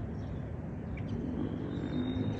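Outdoor background ambience: a steady low rumble of noise with no clear distinct event, apart from a tiny click about a second in.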